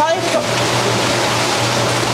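A loud, steady rushing noise like running water, over a low steady hum, with a brief word at the very start.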